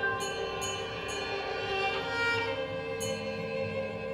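Live ensemble music: a bowed violin holding long notes over sustained chords, with a few light, high taps.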